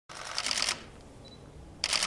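Press camera shutters firing in rapid bursts, many clicks close together: one long burst at the start and another short one near the end.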